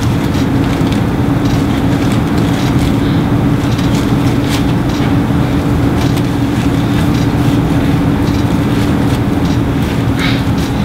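Steady low hum over a constant rushing background noise, with no speech.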